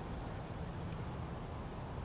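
Steady low rumble and hiss of outdoor background noise, with a few faint clicks.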